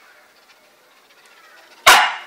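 A dog barks once, a single sudden loud sharp bark near the end that fades quickly.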